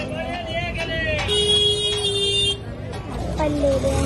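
Busy market background of people's voices, with a steady horn-like tone lasting about a second in the middle, dropping slightly in pitch partway through.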